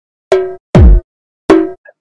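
Three loud, separate drum-machine hits with a ringing, cowbell-like tone and a deep falling kick under each. They are the last beats of a hip-hop track, spaced about half a second to three-quarters of a second apart.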